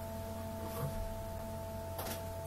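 A steady background hum with two constant, high, pure-sounding tones, and a faint brief rustle a little under a second in.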